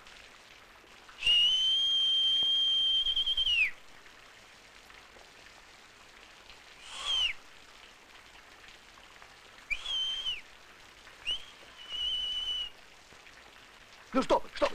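A person whistling shrill high notes: one long held note of about two and a half seconds that drops off at the end, then two short whistles, then a quick blip followed by a held, wavering note near the end. Steady rain hiss runs underneath.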